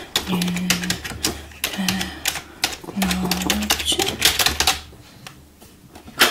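Fast typing on a keyboard, a dense run of key clicks that stops about five seconds in.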